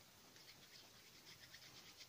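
Faint, quick rubbing of palms working a lump of plasticine between them to warm and soften it, starting about a third of a second in.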